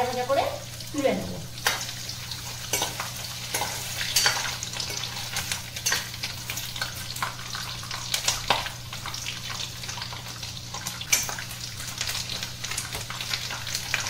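Small pieces of raw banana sizzling steadily in hot oil in a black kadai, while a metal ladle stirs them, with frequent scrapes and clicks against the pan. A steady low hum runs underneath.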